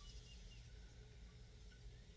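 Near silence: the quiet room tone of a parked car's cabin, with a couple of very faint high chirps.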